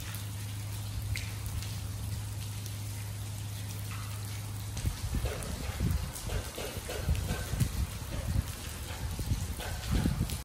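Rainwater dripping and pattering through a leaking roof onto a flooded floor, with faint scattered drips over a steady low hum. About halfway through, irregular low thumps and rumbles come in.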